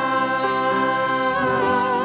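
Live worship song: several voices holding a long note together, the top voice wavering with vibrato near the end.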